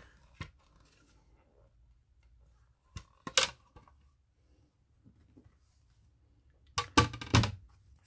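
Handling noise of a hard lacquered book cover and a block of paper being moved on a table: a faint click, a brief rustle about three seconds in, then a louder cluster of knocks and rustles near the end.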